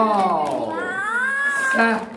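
A long, drawn-out, wordless vocal exclamation: one voice whose pitch arches down, then slides up high and holds, dropping back low near the end.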